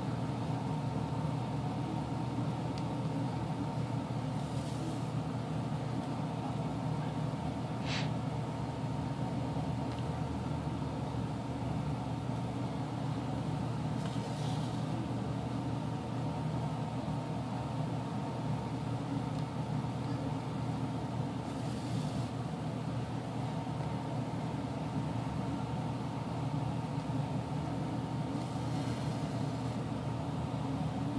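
A steady low background hum, with one sharp click about eight seconds in.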